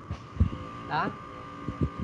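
A man says one short word about a second in, over a faint steady high whine. A few soft low thumps come before and after the word.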